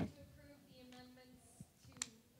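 Faint speech: a brief voice sound at the start, then quieter talk, too faint for words to be made out.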